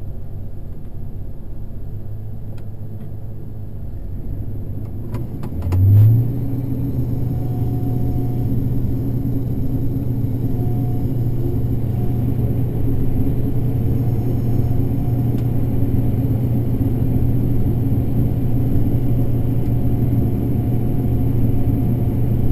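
Combine harvester shelling corn, heard from inside the cab: a steady low engine drone that rises in pitch and grows louder about six seconds in, after a few clicks, then runs on fuller and steadier. A faint high whine runs throughout.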